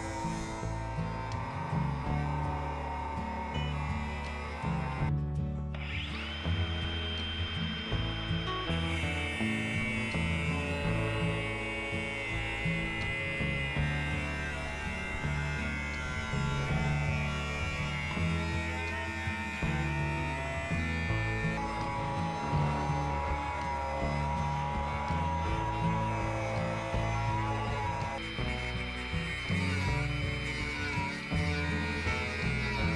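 Background music with a steady beat, mixed with a Ryobi cordless angle grinder cutting rebar. The grinder's high whine is heard from about six seconds in until about twenty seconds in.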